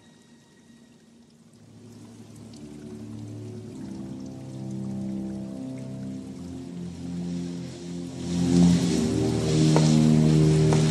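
Music with sustained low notes that swells steadily from quiet to loud, with a rushing noise rising over it in the last two seconds.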